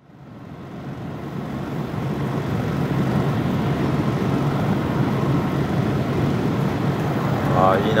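Steady rushing outdoor noise with a low hum underneath, fading in over the first couple of seconds; a man's voice starts near the end.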